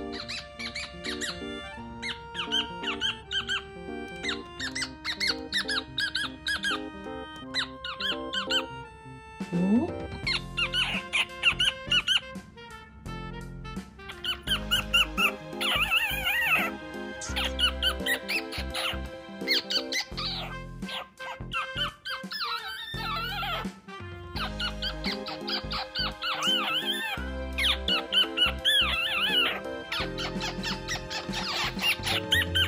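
Male cockatiel singing: phrase after phrase of warbling, wavering whistles, over background music that picks up a steady beat about ten seconds in.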